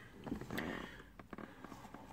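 Faint background noise in a pause of speech, with a soft swell about half a second in and a few light clicks after it.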